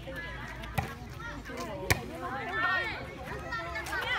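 A volleyball being struck twice, a little over a second apart, in sharp slaps, with the second hit the loudest. Voices call out around the rally.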